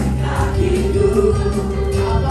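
Live congregational worship singing: singers on microphones leading a room of voices over band accompaniment, holding one sung note through most of it.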